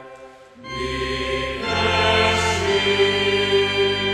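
A choir singing a Christmas song with sustained accompaniment, coming in after a brief pause about half a second in.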